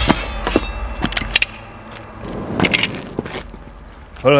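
A string of short sharp metallic clicks and clinks, about eight of them and irregularly spaced, one with a brief high ring, over a low rumble.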